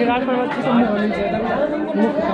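Speech only: a man talking, with other people chattering around him.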